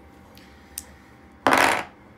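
Steel magnet bracket from a hard disk set down on a table: a faint click, then a short metallic clatter about one and a half seconds in.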